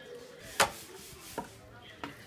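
Two sharp knocks of a long-handled hoe's blade striking the concrete ground while scraping up cow dung, the first loud, the second fainter a little under a second later.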